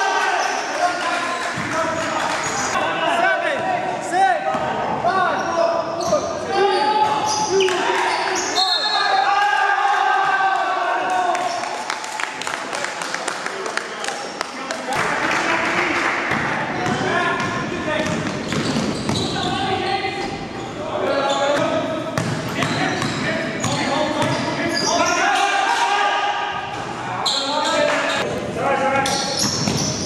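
A basketball bounces and dribbles on a gym's wooden floor during a game, with players' voices calling out and echoing in the large hall.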